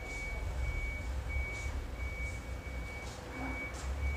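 An electronic beeper sounding a single high tone, repeating evenly about one and a half times a second over a low rumble.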